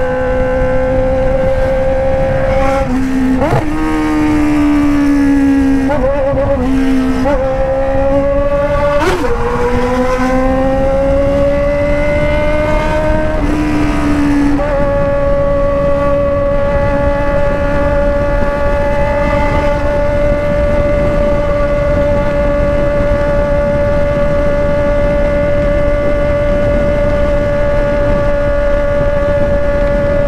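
Honda Hornet's inline-four engine through a straight-pipe exhaust with no muffler, under way. Its pitch climbs and drops back several times through upshifts in the first fifteen seconds, then holds a steady note at cruising speed, with wind rushing past.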